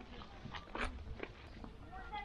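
Footsteps on a concrete path: a few light steps about half a second apart, with faint voices in the background.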